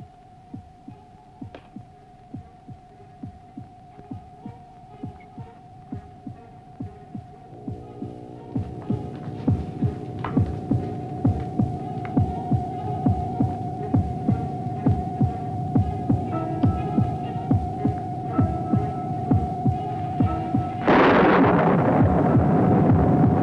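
Film soundtrack suspense effect: a steady high hum over a regular low thump about twice a second, the thumps growing louder from about eight seconds in. About a second before the end, a loud rushing burst breaks in as a puff of smoke goes off on the floor.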